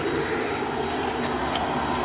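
Oil-fired boiler running: a steady even roar from the oil burner, with no let-up.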